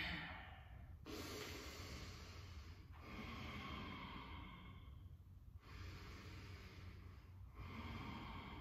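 Faint, slow human breathing: long, breathy breaths in and out, each lasting two to three seconds, with short gaps between them.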